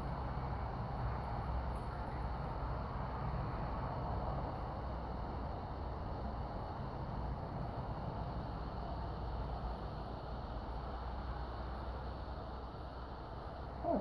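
Steady background noise, strongest in the low range, with no distinct events.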